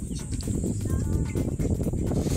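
Wind buffeting the microphone on an open boat, a rough, uneven low rumble.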